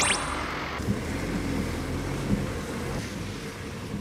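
A quick rising whistle at the very start, then the steady noise of a car running.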